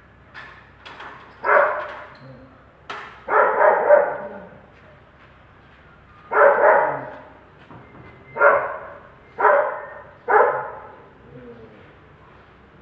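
A dog barking repeatedly, about six loud barks spaced a second or two apart, some of them in quick runs.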